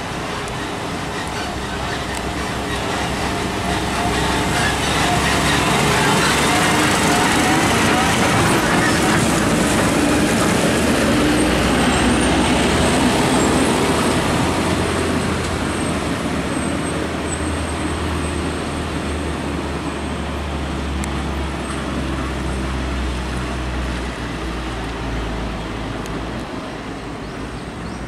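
Heavy diesel trucks driving past close by: a concrete mixer truck and a dump truck, their engines running with tyre and road noise. The sound grows louder over the first few seconds, is loudest while the trucks pass, then fades as they drive off.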